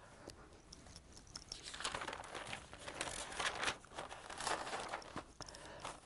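Faint rustling and crinkling with a few light clicks, starting about two seconds in and stopping just before the end.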